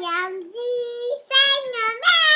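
A two-year-old girl singing in a high child's voice, holding three long notes one after another with short breaks between them.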